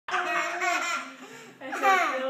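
High-pitched laughter in two bouts: one through about the first second, then a louder one near the end.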